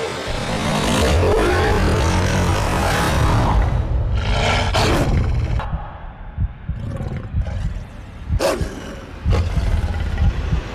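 Movie sound effects for a man's transformation into a giant wolf: a loud, rushing animal roar for the first few seconds, then two sudden sweeping hits about five and eight and a half seconds in, over a low rumble.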